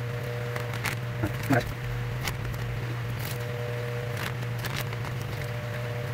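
Plastic shipping bag crinkling a few times as it is handled, over a steady low hum.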